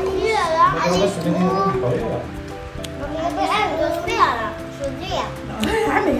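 Children's voices chattering over steady background music.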